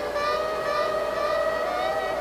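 Long held woodwind notes that shift slowly in pitch, playing over the steady hiss of a rainstorm recording.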